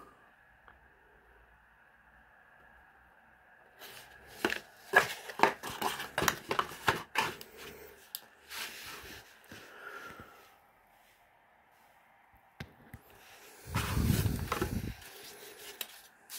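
Cardboard of a folded perfume box being handled on a table: after a few quiet seconds, a run of sharp clicks and rustles of stiff card being moved and flattened. Near the end comes a louder, longer rustle with a dull thud as the box is picked up.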